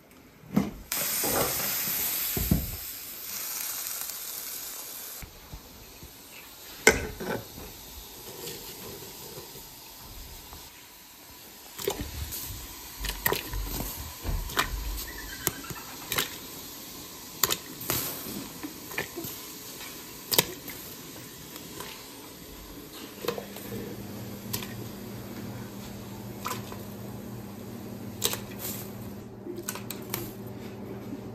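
Metal pot lid lifted with clanks and a loud hiss for the first few seconds. Then potato-filled dumplings are dropped one by one into a large aluminium pot of hot water, with soft splashes and light knocks against the pot. A steady low hum comes in about two-thirds of the way through.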